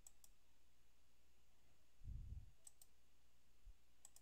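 Computer mouse buttons clicking over near-silent room tone: a quick pair of clicks at the start and another pair just before three seconds in. A soft low thump comes a little after two seconds.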